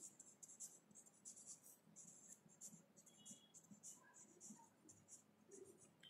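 Faint scratching of a marker pen writing on a paper chart, a quick series of short strokes as letters are formed.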